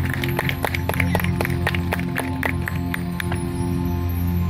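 Opening of a marching band's show music: a sustained low chord held steady, with a regular ticking about four times a second over it that stops near the end.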